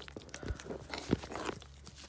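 Rustling and crunching of straw and wood-shavings bedding as gloved hands handle a newborn lamb, with scattered crackles and a low thump just past a second in.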